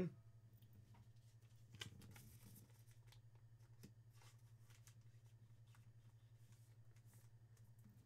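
Near silence with a steady low hum, broken by a few faint soft rustles and clicks about two seconds in and a single tick near the middle: a trading card and a plastic penny sleeve being handled.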